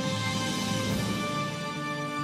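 News-show closing theme music: held chords with a swell of noise that peaks about a second in.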